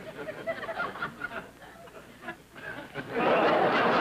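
Studio audience laughing: scattered chuckles at first, then a sudden loud burst of laughter about three seconds in that keeps going.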